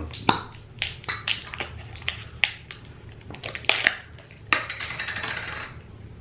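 Glass preserve jars being opened and spooned from: a run of sharp clicks and clinks from the lids and a metal spoon against the glass, then a scraping sound from about four and a half seconds in as the spoon works through the preserves.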